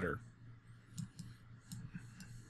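A few faint, short clicks in a pause between spoken sentences, about a second in and again near the end, with the tail of a spoken word at the very start.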